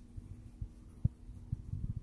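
Low, irregular thuds from a handheld phone camera being carried while walking, several close together near the end, over a steady low hum.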